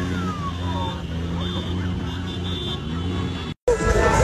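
Car engine running steadily while riding in a road convoy, with voices over it. Near the end the sound cuts out for a moment and louder music begins.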